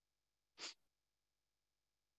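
A single short breath out, like a soft sigh, about half a second in, with near silence around it.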